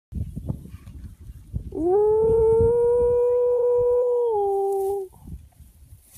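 A loud, long, drawn-out call from a person calling in cattle: it swoops up, holds one steady high note for about three seconds, then dips slightly and stops. Low rumbling noise comes before it.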